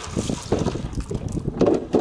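Wind buffeting the microphone in uneven gusts, a rough rumble with scattered crackles.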